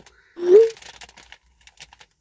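A short rising voiced "hm" about half a second in, followed by faint crinkles and ticks from a plastic crisp packet being handled and turned over.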